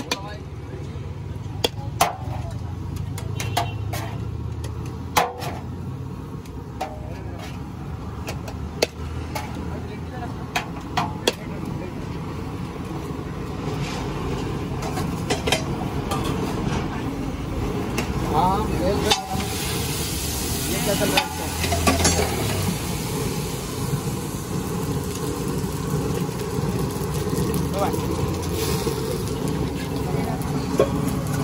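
Irregular sharp clinks and scrapes of a steel spoon against steel pots and bowls as chickpea curry is ladled out, over a steady rumble of street traffic and nearby voices.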